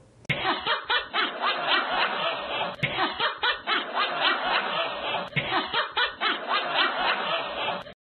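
A person laughing heartily in quick, continuous bursts, the recording muffled, with two abrupt splices where the laugh is cut and repeated.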